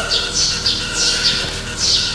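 Birds chirping in the background: a run of short, falling high-pitched chirps, about two or three a second.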